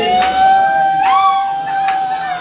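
Mourners singing a hymn together, with one voice holding a single long high note for nearly two seconds while another voice slides up over it about a second in.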